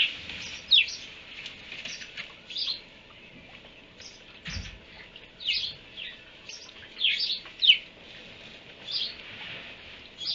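Small birds chirping in short, sharply falling chirps every second or so, the loudest about three-quarters of the way through, with one dull low thud about four and a half seconds in.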